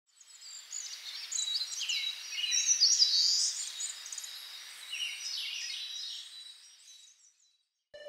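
Several birds chirping and trilling over faint outdoor hiss, busiest around the middle; the sound fades in at the start and fades out about a second before the end.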